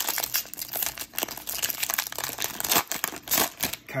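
Foil wrapper of a 2019 Panini Prizm football hanger pack being torn open and crinkled by hand: an irregular run of sharp crackles and rustles.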